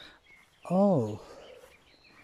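A man's voice says a single drawn-out "oh" with a rising-then-falling pitch, just over half a second in, over faint outdoor background.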